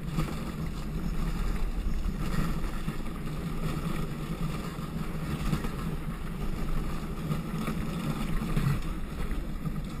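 Steady rolling noise of a gravity luge cart's wheels running downhill on a wet asphalt track, with wind buffeting the microphone.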